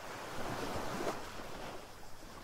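Ocean surf: a soft wash of waves that swells about half a second in and eases off near the end.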